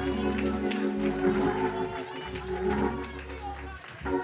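A congregation applauding over sustained keyboard chords, with scattered voices. The held chords and clapping fade near the end.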